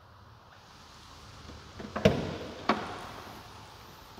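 Trunk lid of a 2011 Dodge Challenger SRT8 being unlatched and opened: two sharp clicks about two-thirds of a second apart, the first the louder, as the latch releases and the lid comes up.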